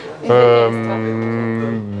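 A man's deep bass voice holding one long, low, steady vocal sound, like a drawn-out 'eeh', for about a second and a half before he answers.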